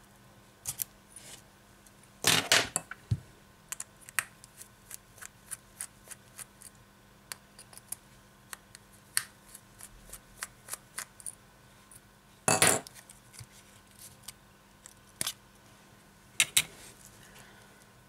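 Small metal clicks and taps of a precision screwdriver and fingers working the screws and metal frame of a smartphone being taken apart, with two louder clattering bursts, about two seconds in and about halfway through.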